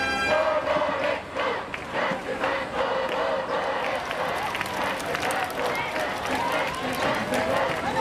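Stadium crowd cheering section shouting and chanting in unison, many voices together, punctuated by sharp hits. A brass band phrase cuts off just as it begins.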